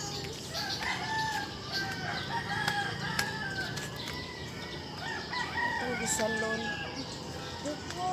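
A rooster crowing, with long drawn-out calls, one in each half.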